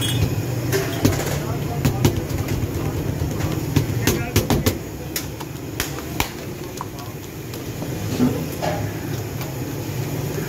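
Hands slapping and patting paratha dough on a floured table, sharp irregular slaps about once a second. Under them runs a steady low rumble of street traffic, with voices in the background.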